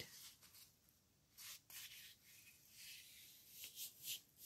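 Faint rustling and rubbing of construction paper as hands fold a corner over and press it flat, in several short, soft strokes.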